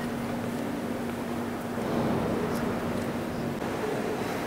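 Steady ambient noise of a large cathedral interior, with a faint steady low hum that fades out near the end.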